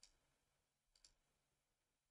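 Faint computer mouse clicks: a quick pair of clicks at the start and another pair about a second in.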